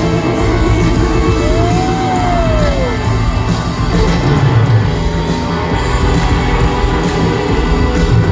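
Live rock band playing at concert volume in an arena, with crowd noise mixed in. A single note swoops up and back down about a second and a half in.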